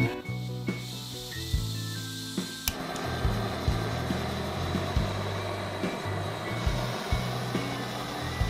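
A SOTO SOD-310 WindMaster gas canister stove being lit: a sharp click of its push-button piezo igniter about three seconds in, then the burner running with a steady hiss. Background music plays underneath.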